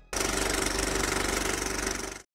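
End-card sound effect: a dense, rapid rattling noise that starts abruptly, holds steady for about two seconds and cuts off suddenly.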